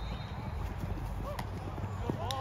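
Faint, distant voices over a steady low outdoor rumble, with one sharp smack about one and a half seconds in.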